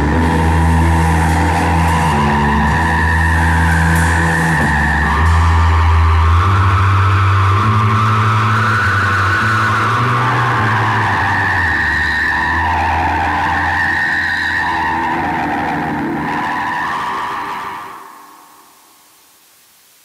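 Closing drone of a lo-fi garage-rock song: distorted electric guitar and bass holding long notes that shift in pitch, with high wavering feedback squeals and no drums. It fades out about eighteen seconds in, leaving a steady tape-like hiss.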